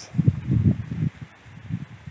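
Wind rumbling on the microphone in irregular gusts, strongest in the first second and then dying down.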